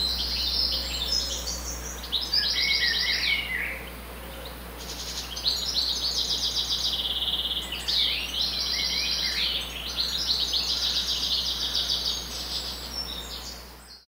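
Songbird singing a run of high, rapid trilled phrases with short pauses between them, fading out near the end.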